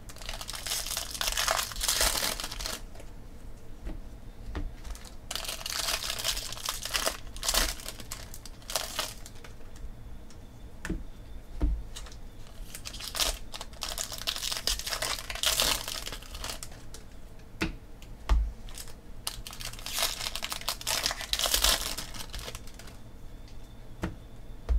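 Baseball cards being handled and sorted by hand, in rustling spells of a second or two with a few light taps on the table.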